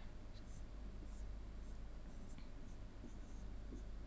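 Pen strokes on a writing board as graph axes and numbered tick marks are drawn: short, scratchy strokes about two or three a second, over a low steady hum.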